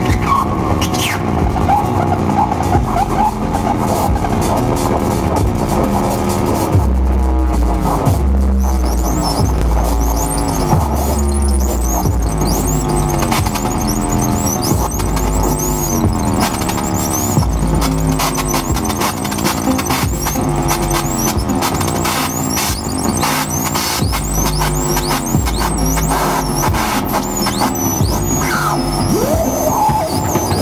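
Live electronic music from modular synthesizers: repeating falling synth tones over clicking noise, with a deep bass coming in about seven seconds in. Thin high warbling tones join the mix partway through.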